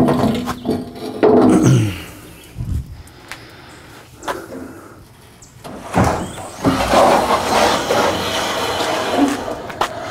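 Aluminum trailer loading ramps being slid out from under the trailer floor along nylon runners: metal scraping and clattering with a short falling tone in the first two seconds, a sharp knock about six seconds in, then a long even sliding rush as the second ramp is pulled out.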